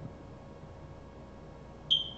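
Quiet steady hum, then near the end a single short, high beep that starts sharply and fades quickly.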